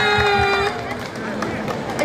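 A woman's drawn-out "ne" through the PA speakers, ending under a second in, followed by the low murmur of the street crowd.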